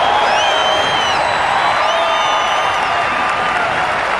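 Large stadium crowd applauding and cheering in a steady, loud wash of noise. Two long high calls rise above it in the first three seconds.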